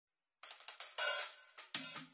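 Quiet hi-hat and cymbal strokes on a drum kit, starting after a brief silence in a sparse, uneven pattern of about eight strikes, with one longer, washier stroke about a second in and a deeper hit near the end.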